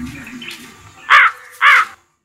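A crow cawing twice: two short, loud calls about half a second apart.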